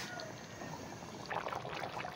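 Chicken and coconut-milk stew simmering in a pan, a quiet, irregular bubbling of the sauce.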